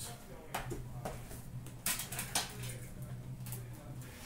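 Cardboard retail trading-card boxes being handled and set down, with a few light knocks and rustles over a steady low hum.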